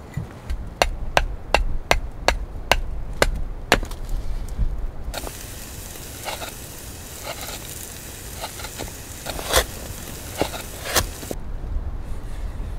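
Sharp chopping strikes on a piece of split wood, about two to three a second, for the first few seconds. After about five seconds a knife carves the wood, with scattered small cutting clicks over a steady hiss that stops shortly before the end.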